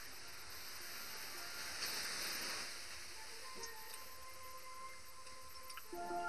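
A steady rushing hiss with faint held musical tones beneath it.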